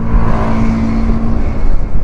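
Yamaha motor scooter riding along a street: the engine runs at a steady pitch under a rush of wind noise on the helmet-mounted microphone.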